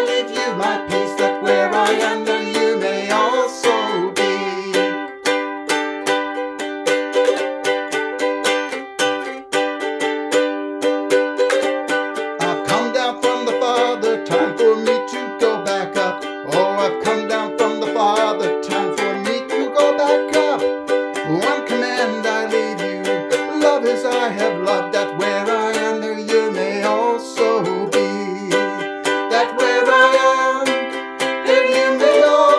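A ukulele strummed in a steady rhythm, accompanying a man and a woman singing a worship song together.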